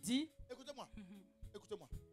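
A voice speaking quietly in short wavering phrases, with a rising, drawn-out syllable at the start.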